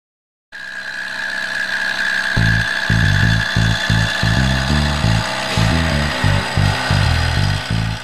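A CNC milling machine's end mill cutting a cast aluminium box with a steady high whine. Background music with a stepping bass line comes in about two seconds in.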